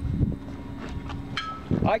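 A single low footstep thud on the floating dock about a quarter-second in, over a steady low motor hum.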